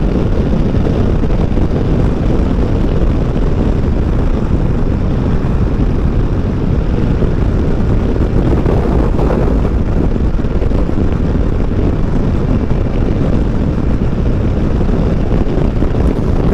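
Steady wind rush over the microphone of a motorcycle rider at about 110 km/h. Underneath runs a BMW F 900 XR's parallel-twin engine, holding a steady cruise.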